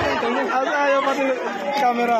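Several people talking at once, their voices overlapping in chatter; the music behind them cuts off just at the start.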